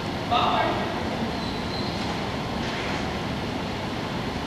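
Steady, even room noise of a large indoor hall, with one short word called out by a person near the start and a faint high squeak a couple of seconds in.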